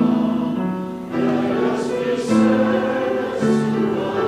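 Church congregation singing a hymn together, holding long notes that change about every second.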